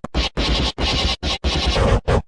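Harsh, heavily distorted intro audio put through effects, chopped into loud noisy bursts that cut out and restart about every third to half second.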